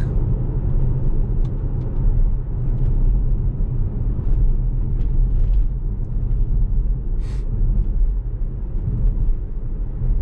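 Steady low road and tyre rumble inside the cabin of a 2015 Tesla Model S, an electric car, driving at about 35 to 45 mph on a rural road. A brief hiss comes about seven seconds in.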